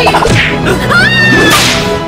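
Background music overlaid with whip-like swishing sound effects, and a high tone that slides up about a second in and holds for about half a second.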